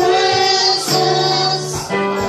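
Worship music in a church: women singing a song with held notes over keyboard accompaniment and a steady beat.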